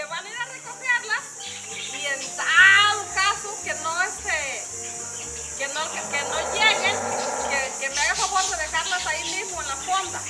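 A steady high-pitched chorus of insects, with voices talking over it.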